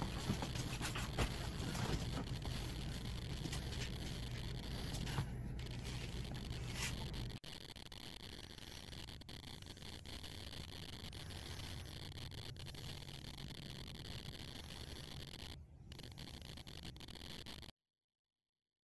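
A cat's paws scrabbling and scraping on a wooden parquet floor, with scattered sharp clicks, as it chases a laser dot. After a sudden cut about seven seconds in, quieter soft rustling of bedding as a cat handles a fuzzy ball toy.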